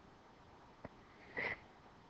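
Near silence, with a faint click a little under a second in, then a short, quiet breath drawn in by the narrator.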